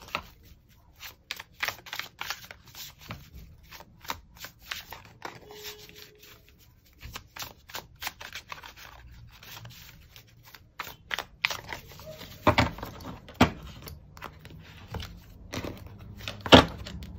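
A deck of tarot cards being hand-shuffled: a steady patter of soft, irregular card flicks and slides, with two louder knocks about three-quarters of the way through.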